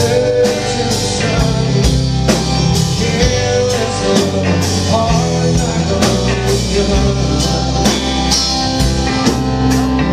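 Live rock band playing: distorted electric guitars and bass guitar over a drum kit keeping a steady beat.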